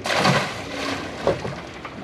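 A white sturgeon splashing into the river as it is released over the side of a boat: a short, loud splash of water right at the start, then quieter water movement.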